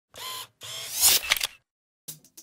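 Camera-like logo sound effect: a short first sound, then a longer one that swells to a sharp peak about a second in, followed by a few quick clicks.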